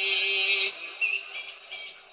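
A singing voice holding one long, steady note that ends about two-thirds of a second in, followed by fainter, broken snatches of the same chant-like singing.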